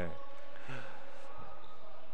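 Steady gymnasium room noise with faint, distant voices.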